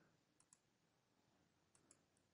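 Faint computer mouse clicks over near silence: a quick pair of clicks about half a second in and another pair near the end.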